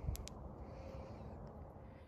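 A soft handling bump, then two quick sharp clicks close together, then faint steady background hiss.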